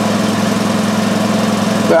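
Pontiac Grand Am car engine running at a steady speed, a constant low hum with no change in pitch.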